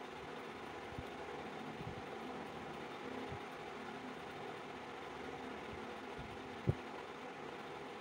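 A small plastic loose-powder jar and a powder puff being handled, giving a few soft bumps, the clearest about two-thirds of the way through, over a steady, faint background hum.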